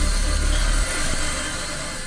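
Trailer sound design: a low rumble under a wash of hiss, easing off over the second second.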